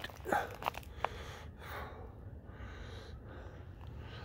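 A short, sharp breath just after the start, followed by a couple of small clicks. Then a faint steady background hiss.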